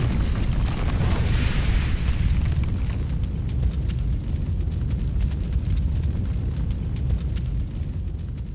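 Logo-reveal sound effect: a deep, steady rumble with fine crackling throughout, and a hiss that swells over the first few seconds.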